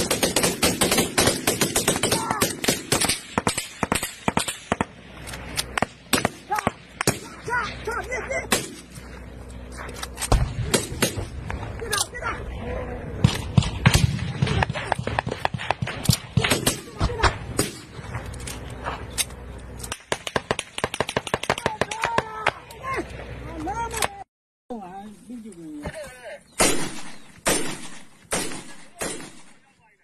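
Heavy small-arms fire: rifles shooting rapid, overlapping shots and bursts, with men shouting among the shots and some deeper booms around the middle. After a short break near the end, fewer, separate rifle shots follow.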